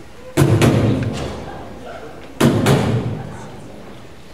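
Percussion beat opening a choral song: two pairs of heavy thumps about two seconds apart, the hits of each pair close together, each followed by the hall's echo.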